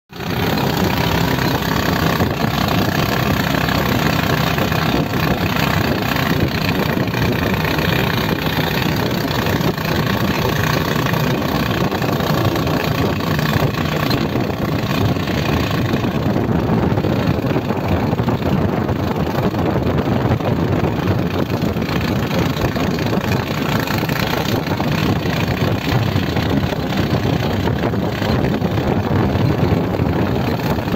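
Motorcycle engine running steadily while riding, mixed with heavy wind and road rush on the microphone.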